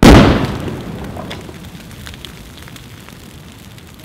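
A loud explosion boom that hits suddenly and dies away over about two seconds, followed by scattered crackles.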